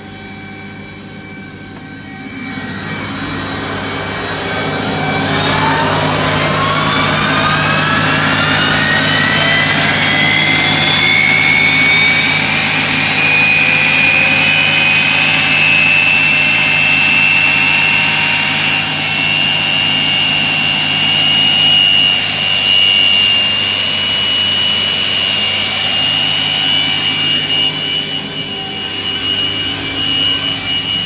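Pratt & Whitney JT8D turbofan on a Boeing 737-200 being dry motored by its air starter, with no fuel. A rush of starter air builds a few seconds in, then a whine rises in pitch as the engine spools up and settles into a steady whine at about 10% RPM.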